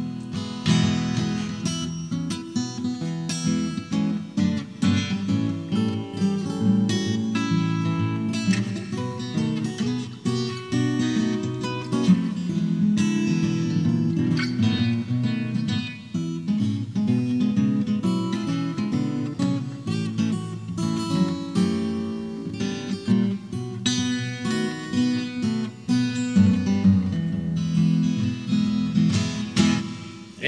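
Acoustic guitar playing an instrumental break in a country song, picked and strummed continuously with no singing.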